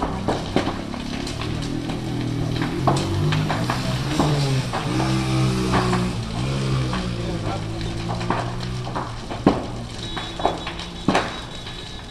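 Building fire burning, with many sharp cracks and pops throughout, over the voices of people nearby.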